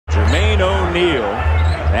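Television basketball commentator talking over a steady low rumble of arena background noise.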